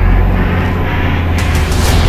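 Engine and drivetrain noise of a rally vehicle heard from inside its cockpit while driving at speed over desert tracks: a steady, heavy low drone.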